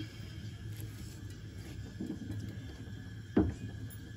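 A low steady hum with one sharp knock about three and a half seconds in, as a carrot is set into a pot of sugared pumpkin pieces.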